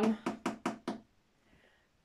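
Knuckles knocking on an empty wooden shelf board: five quick knocks in under a second.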